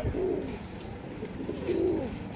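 Domestic pigeons cooing: a low coo just at the start and another, louder one near the end.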